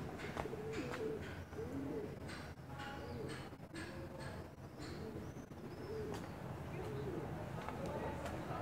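Birds calling with low, arched cooing notes repeated every second or so, and a few higher chirps around the middle, over faint footsteps.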